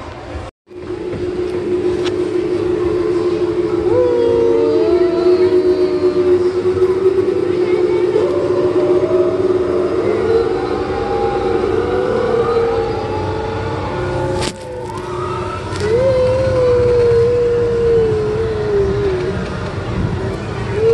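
Spinning balloon ride in motion, heard from a gondola: wind rumbling over the phone microphone under a steady drone, with wavering tones that glide up and down over it.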